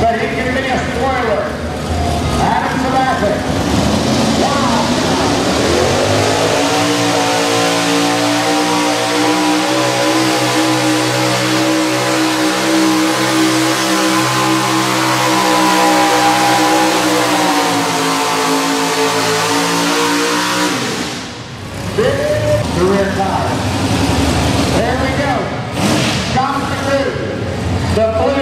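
Econo Rod class pulling tractor's engine revving up and held at high revs for about fifteen seconds while it pulls the weight-transfer sled, then dropping away and cutting off about three quarters of the way through. A man's voice talks before the run and again after it ends.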